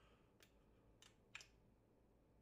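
Faint, light clicks of a steel combination wrench being picked up and handled against the caster's bolt hardware, three small clicks in a near-silent room.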